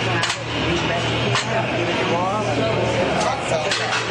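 Busy gym background: voices and music over a steady low hum, with a couple of sharp clicks.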